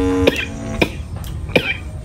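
A woman coughing, a few short coughs, over light background music whose held notes stop early on.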